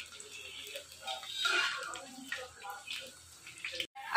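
Thin slices of raw banana deep-frying in hot oil in a wok: a steady sizzle of bubbling oil.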